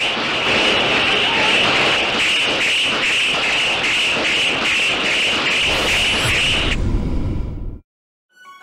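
War-film battle sound: a loud, dense din of gunfire, about three shots a second, that cuts off suddenly near the end.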